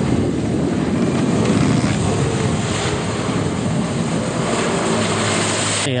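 Jet ski running at speed: a steady engine drone mixed with the rush of water and spray.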